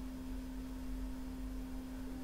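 A steady low hum, a single unwavering tone, over a faint low rumble.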